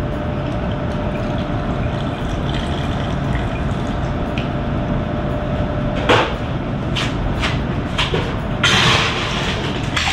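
Gin poured from a bottle into a cocktail glass over a steady background hum. Then come a few sharp clinks and knocks of bar glassware, and a short rattling burst near the end as ice goes in.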